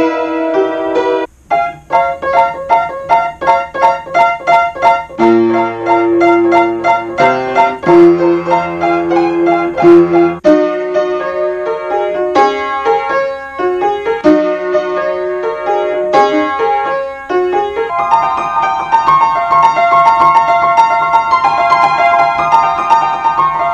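Old upright piano played by hand: a run of short repeated notes and chords, with a brief break about a second in, then held chords near the end. Two of its keys, broken for a long time, have just been repaired.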